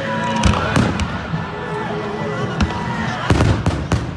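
Firecrackers going off among a celebrating football crowd: a scattering of sharp bangs, with a quick cluster of them in the last second, over crowd voices and some singing.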